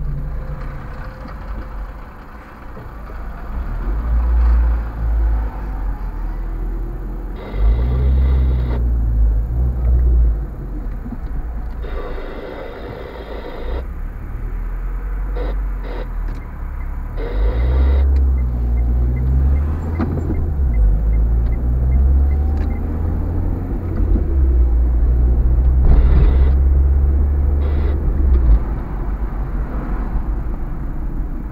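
Car driving in city traffic, heard from inside the cabin: steady low engine and road rumble that swells and eases with speed, with a few louder rushes of hiss lasting a second or two.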